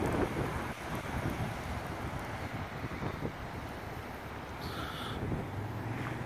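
Steady low rumble of a vehicle on the road, with wind noise on the microphone. A short, faint high tone comes in about five seconds in.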